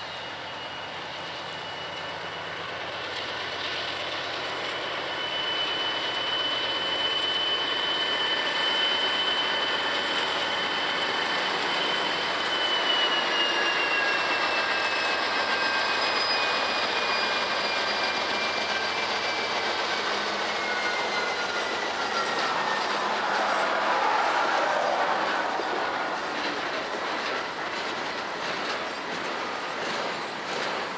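Freight train passing: Norfolk Southern diesel locomotives and then loaded coil steel cars rolling by, with wheels clicking over the rail joints. It grows louder after the first few seconds. A thin, high wheel squeal holds steady, then slowly falls in pitch through the middle.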